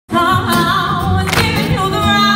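Live band music with a singer's sustained, wavering vocal line over it, starting abruptly as the recording begins.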